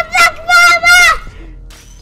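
A young girl shouting a drawn-out, high-pitched, sing-song call in three bursts over about the first second, then only a quieter background.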